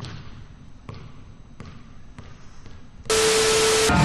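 A basketball bouncing on a hard floor, five bounces coming closer together as it settles. About three seconds in, a loud hissing burst with a steady tone cuts in.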